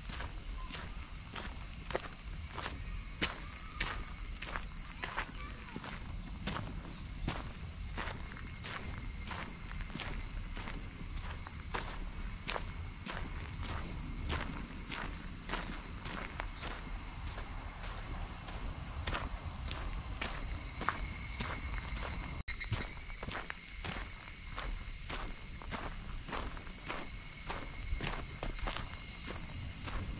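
Footsteps of a person walking at a steady pace on a dirt path strewn with grit and dry leaves, about two steps a second, over a steady high-pitched chorus of insects.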